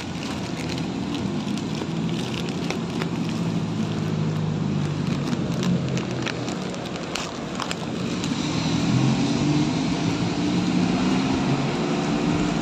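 Steady hum of road traffic with engines running, and intermittent crinkling of a clear plastic bag being handled in the fingers.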